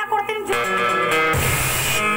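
Live band music with drum kit and guitar: a held chord comes in about half a second in, and the drums and bass join around the middle.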